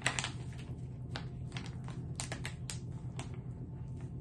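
Mouth chewing a sticky chewy ginger candy: irregular sharp wet clicks, several a second, over a steady low hum.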